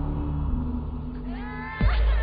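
Horror-trailer score: a low, sustained droning bass. Near the end a pitched wail rises sharply and is cut off by a deep boom.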